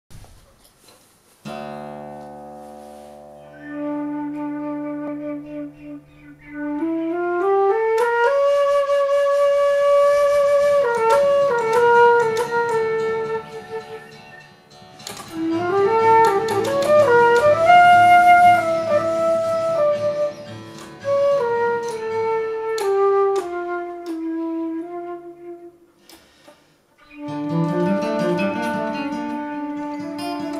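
Foot flute, a flute whose keys are worked by the player's legs, playing a melody of held notes and rising runs together with acoustic guitar. A guitar chord opens about a second and a half in, the flute enters soon after, and near the end there is a short pause before picked guitar notes return under a held flute note.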